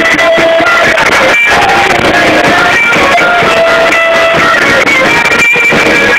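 Loud, dense rock music led by guitar, in an instrumental stretch with no singing.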